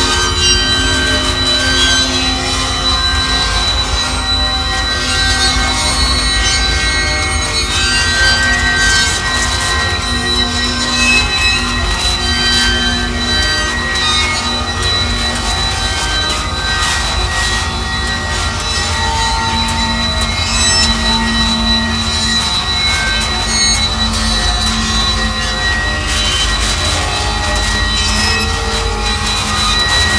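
Power-electronics noise music: a loud, steady wall of noise with a low rumble underneath and held high whistling tones on top, unchanging throughout.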